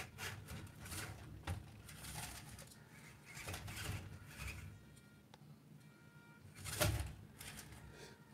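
Faint whir of a 1/24 scale RC crawler's electric motor and geartrain as it drives over a foam ramp, with a few small clicks. A soft thump comes near the end.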